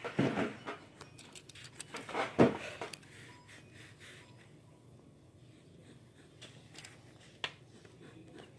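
Drawing pen scratching faintly on sketchbook paper, with soft rustles and a bump of handling in the first couple of seconds and a single click near the end.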